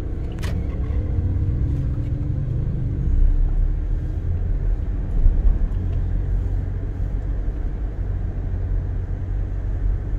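Low, steady rumble of a car being driven, heard from inside the cabin: engine and road noise. The engine note shifts in pitch over the first few seconds, with a brief click about half a second in.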